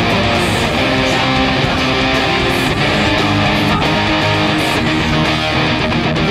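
Two electric guitar parts playing a rock song together, strummed chords and riffs over a full band backing with drums and cymbal crashes.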